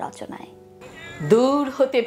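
A woman's voice, drawn out and gliding in pitch, opening a Bengali poetry recitation over soft background music.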